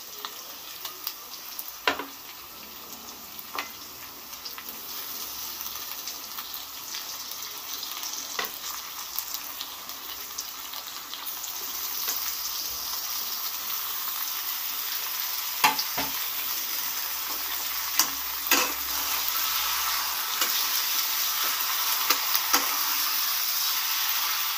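Raw chicken pieces sizzling as they fry in a non-stick kadai with onions and ginger-garlic paste. The sizzle grows louder from about halfway through, with a few sharp clicks scattered through it.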